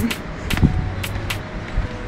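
Footsteps on stone stairs going down, sharp steps about three a second, over a steady low rumble.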